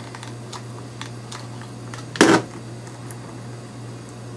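Dry twigs and a hot glue gun being handled while twigs are glued onto a broom stick: faint scattered clicks and rustles, with one louder brief noise about two seconds in. A steady low hum sits underneath.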